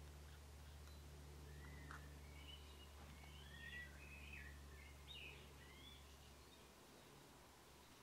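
Near silence: a faint low hum, with a series of faint bird chirps from about two seconds in until about six seconds.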